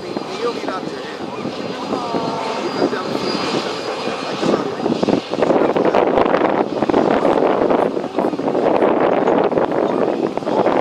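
Steady engine noise that grows louder in the second half, with a brief gliding whine about two seconds in.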